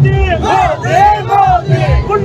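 A crowd of party workers chanting the slogan "Modi, Modi" over and over, many loud shouted voices rising and falling in a rhythmic beat.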